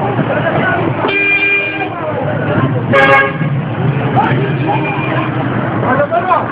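Vehicle horns sounding twice over a crowd of voices: a steady blast lasting under a second about a second in, then a shorter, louder toot about three seconds in.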